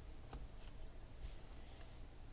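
Faint handling of trading cards on a table: light rustling and sliding, with one small tap about a third of a second in.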